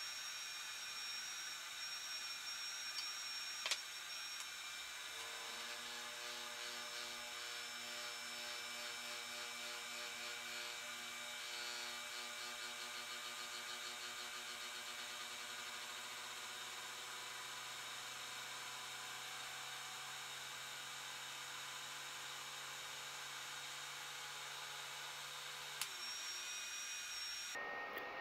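Cotton candy machine running, a steady whir with a single click about four seconds in. From about five seconds in a steady low hum with overtones joins the whir and holds until near the end.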